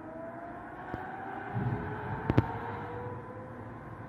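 Distant air-raid siren wailing, its tone slowly rising in pitch, with a sharp double click about two seconds in.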